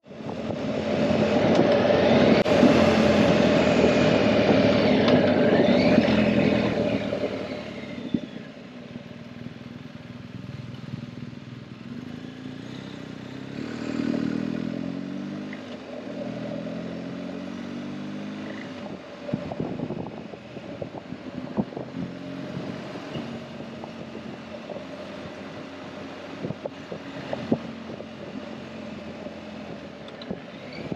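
BMW R1250GS boxer-twin motorcycle being ridden, with engine and wind noise loud and revving for about the first seven seconds, then dropping to a quieter steady run. Around the middle the engine pitch rises briefly, and scattered sharp knocks come through in the second half.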